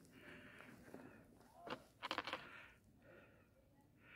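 Near silence: faint outdoor background, with a few brief faint sounds about two seconds in.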